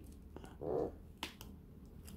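Gloved hands handling a lithium-ion e-bike battery pack while refitting its BMS balance-lead connector. There is faint handling noise, a brief soft rustle under a second in, and one sharp small click of plastic just after a second.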